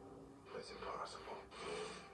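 Quiet speech from a movie trailer playing on a television, starting about half a second in.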